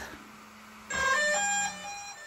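DJI Mavic Air 2 drone playing its electronic power-on chime, a quick melody of several beeps lasting about a second, which starts about a second in, over a faint steady hum.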